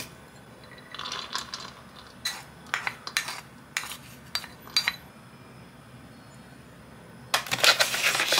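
Wooden spoon and ceramic plate knocking against a ceramic bowl as diced vegetables are scraped in: a string of light clinks and taps, then a louder, denser clatter near the end.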